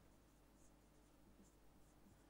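Near silence, with a few faint squeaks of a marker writing on a whiteboard.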